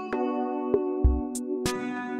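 Background music: held synthesizer or keyboard chords over a light electronic beat, with a low drum thump about a second in.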